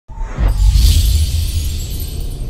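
Cinematic logo intro sting: a deep low hit about half a second in, with a bright, shimmering swish over it that swells and then fades.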